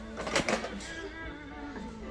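Faint background music, with a brief rattle of handled hardware about half a second in.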